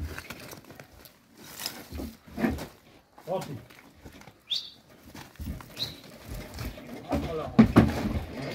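A cow being pushed up into the back of a small truck: its hooves scrape on gravel and knock onto the truck floor, loudest near the end, with short calls and grunts from the men handling it.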